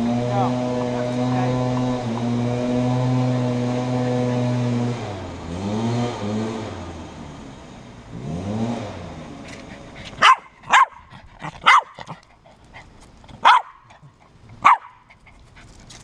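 A small dog barks five times, sharp and loud, in the second half. Before that a steady motor hum runs for about five seconds, then dips and rises in pitch a few times and fades away.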